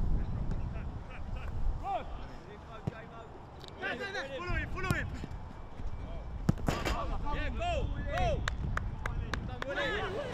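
Footballers' short shouts and calls during a training drill, with sharp thuds of a football being kicked, several coming quickly together near the end. A steady low rumble runs underneath.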